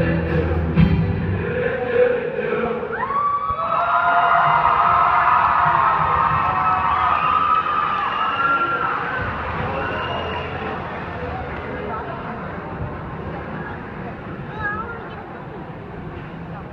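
Live band music stops about a second in, leaving crowd noise and cheering from a large audience. From about three to nine seconds a held, siren-like tone slides up, holds, then slides back down, and the crowd noise slowly fades.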